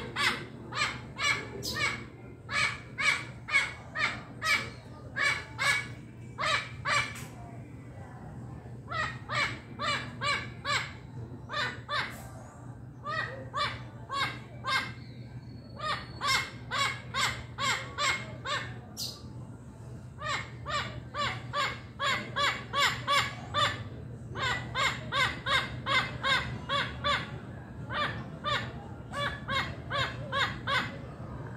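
A parrot squawking in long runs of harsh calls, about three a second, with short pauses between runs.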